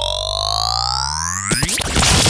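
A synthesized rising sweep sound effect, a stack of tones gliding steadily upward over a low held bass drone. It cuts off about one and a half seconds in, followed by a few sharp stuttering hits and a quick upward swoosh.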